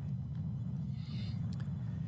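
A low steady rumble with no clear pitch, at a moderate level.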